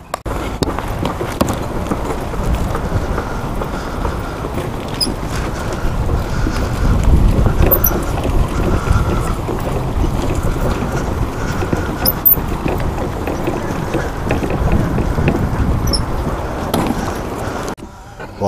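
Wind rumbling and buffeting on an action camera's microphone, a steady low noise with no voices over it.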